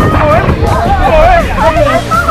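Several riders on a raft in a funnel water slide shouting and laughing over one another, chanting 'spin!' as the raft whirls, over background music.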